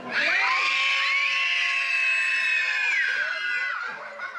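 A crowd of children shouting together on cue in one long held shout of many high voices, lasting about three and a half seconds before fading.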